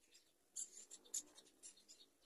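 Faint scratching and scraping in several short strokes, the two loudest about half a second and a second in.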